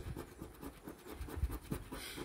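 A large metal coin scratching the coating off a scratch-off lottery ticket in quick repeated strokes.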